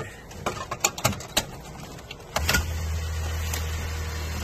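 Clicks and knocks of a clear plastic cover being handled and fitted back into a pachislot machine's cabinet. A steady low hum starts about two and a half seconds in.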